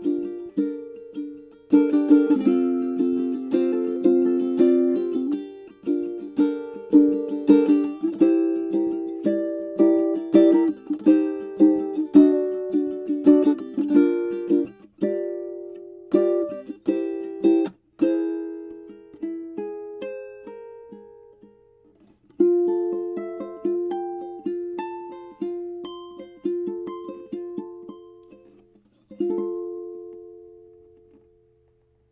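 Oli L2 tenor ukulele, spruce and ebony with lattice bracing, played solo with a full, booming tone. It opens with busy strummed chords, thins to a slower line of single picked notes past the middle, and ends on a chord left to ring.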